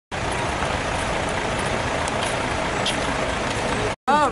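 Steady outdoor city background noise, an even hiss with a low rumble like distant traffic. It cuts off suddenly just before the end.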